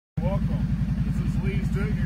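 ATV engine idling with a steady, rapid low throb.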